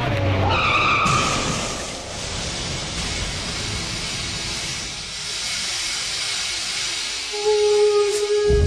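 A car's tyres squeal in a skid for about a second, then a crash: a sudden wide burst of noise that slowly fades over several seconds. It is a staged car-crash sound effect.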